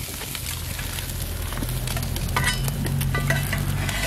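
Eggs, bacon and vegetables sizzling and frying on a hot steel plancha over an open wood fire, with a low steady hum underneath. A metal spatula scrapes on the plate a couple of times in the second half.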